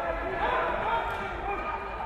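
Several men's voices shouting and calling over one another at a kickboxing bout, with a few dull thuds from the fighters in the ring.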